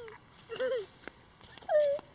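A person's wordless, high-pitched cooing over a baby frog: a short wavering "aww" about half a second in, then a longer sound that falls and holds near the end.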